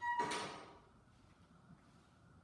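A landmine barbell shifting in its floor pivot sleeve during a press: one short metallic scrape with a brief ring, fading out within about half a second.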